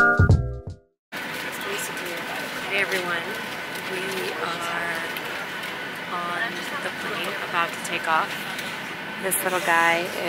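Intro music stops about a second in. It is followed by the steady drone of an airliner cabin in flight, with a woman talking quietly over it.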